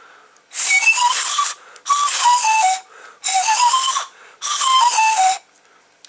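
Drinking-straw pan pipes, their ends sealed with sellotape that is still airtight, blown across the tops. There are four breathy phrases of a few notes each, the pitch stepping up and down from pipe to pipe, with a lot of air noise around the notes.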